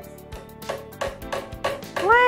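Boomwhackers, tuned plastic percussion tubes, being tapped about three times a second, each tap giving a short hollow pitched note.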